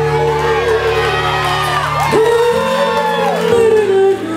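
Live band playing an R&B song: electric bass, drums, keyboard and trumpet, with a long held note and gliding melodic lines over a bass line that changes note twice. The audience whoops over the music.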